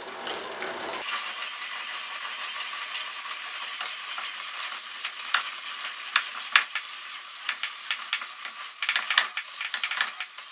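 Veritas twin-screw woodworking vise being cranked open by hand: a steady metallic rattling with irregular sharp clicks as the screws turn and drive the front jaw out, starting about a second in.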